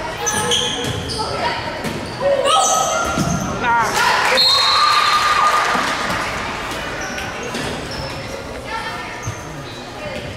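Volleyball rally in a gymnasium: several sharp hits and bounces of the ball with players calling out. About two and a half seconds in, the point ends and players and spectators break into loud shouting and cheering that fades over the following seconds, echoing in the hall.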